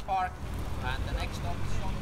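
Faint voices of people talking in the background, in short snatches, over a low steady outdoor rumble.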